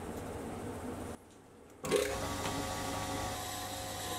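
Sieg C3 7x14 mini metal lathe starting up about two seconds in and running unloaded with a steady, multi-toned whine, after a low background hum.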